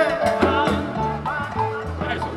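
Live salsa band playing, with steady bass notes under held instrumental tones, and singing over it near the start.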